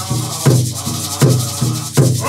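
A group of men singing a Pueblo song together, with a large double-headed drum struck on a steady beat about every three quarters of a second and hand rattles shaken along with it.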